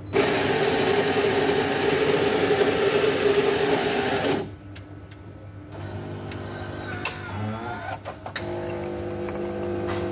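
Automatic bean-to-cup coffee machine grinding beans for about four seconds. After a short pause its pump starts a steady hum as it brews, with two sharp clicks along the way.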